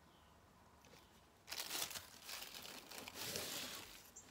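Thin plastic sheet crinkling as it is peeled off the base of a leather-hard clay mug and handled, starting about a second and a half in.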